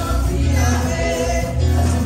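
Gospel music with a group of voices singing over a strong, pulsing bass beat.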